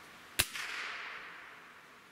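A single shot from a Gamo Swarm Magnum Gen3i .177 break-barrel gas-piston air rifle: one sharp crack about half a second in, followed by a fading ring that dies away over about a second and a half. The 7.8-grain pellet leaves at 1,162 feet per second.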